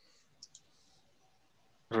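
Quiet room tone with two faint, short clicks about half a second in, then a man's voice starting right at the end.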